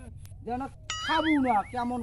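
A ringing sound effect with a wobbling pitch, a comic 'ding', comes in about a second in over a man talking.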